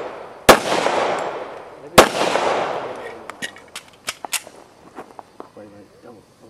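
Two gunshots about a second and a half apart, each with a long fading echo, followed by several faint short sharp ticks.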